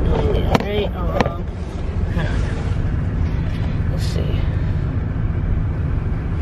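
Handling noise from a camera being repositioned inside a car: two sharp clicks about half a second apart near the start, with a few murmured words. A steady low rumble of the car cabin runs underneath.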